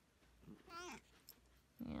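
A domestic cat's single short meow, a wavering, rising cry lasting about a third of a second, just under a second in.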